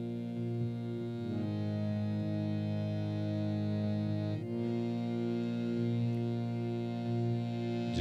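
Harmonium playing sustained chords, its held reedy tones changing chord about one and a half seconds in and again at about four and a half seconds, over a steady low drone.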